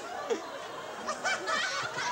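Soft laughter: a few short chuckles, clustered around the middle.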